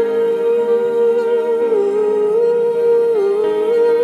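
A woman's voice humming or singing a slow wordless melody into a microphone, holding long notes and stepping between a few pitches, over soft sustained instrumental chords in a worship song.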